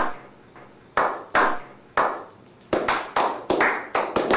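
A slow clap: single hand claps about a second apart, each ringing out in an echo, quickening in the last second or so into faster clapping by several people.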